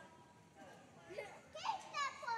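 Faint children's voices in a large hall, with a few louder sliding calls in the second half.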